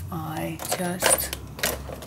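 A woman's voice murmuring briefly, followed by a few sharp clicks about a second in and again near the end.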